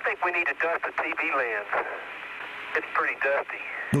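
An Apollo astronaut's voice over the mission radio link: thin, narrow-band speech with a hiss beneath it.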